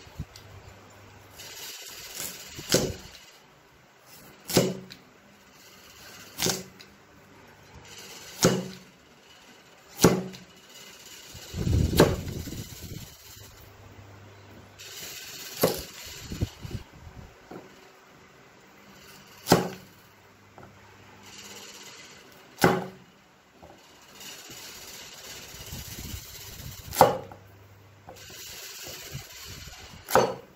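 Cleaver chopping through a carrot into a thick wooden chopping block: single sharp chops every two seconds or so, with a quick run of several knocks about midway.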